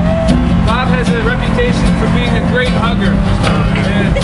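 Several people's voices rising and falling in pitch over a steady low rumble of street traffic, with a few sharp knocks scattered through.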